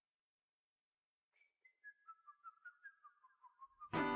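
Near silence, then from about a second in a run of short whistled notes stepping down in pitch, the opening of a background music track.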